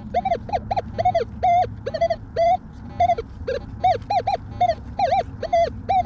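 Minelab Manticore metal detector in Depth mode sounding its target tone over a buried target: a quick run of short beeps of nearly the same pitch, about four a second.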